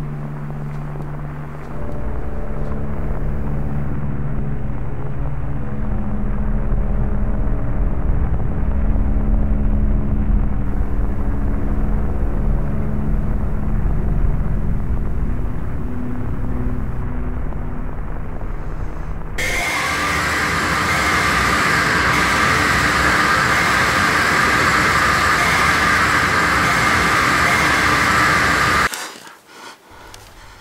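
Nightmare sound design: a low rumbling drone layered with steady sustained tones. About two-thirds of the way in it switches abruptly to a loud, harsh static-like noise, which cuts off suddenly shortly before the end.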